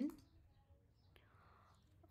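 A woman's spoken word trailing off, then near-silent room tone with one faint click and a short, soft breathy hiss.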